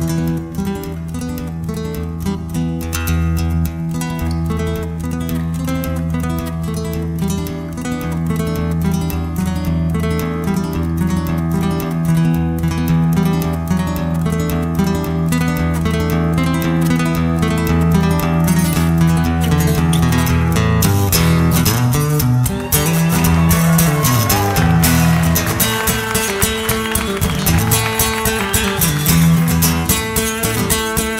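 Instrumental passage of a recorded song with no singing: acoustic guitar picked rapidly over steady, sustained bass notes. From about two-thirds of the way in, notes bend and glide up and down in pitch.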